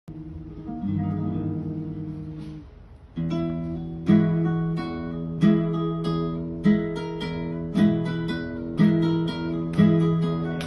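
Solo flamenco guitar playing a rondeña: a chord rings and fades out near the three-second mark, then the playing goes on with sharply accented strokes about once a second over a sustained low bass note.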